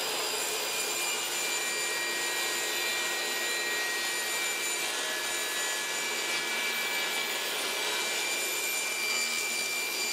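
Table saw running steadily while ripping a thin quarter-inch plywood sheet, a constant motor whine with cutting noise and no pauses.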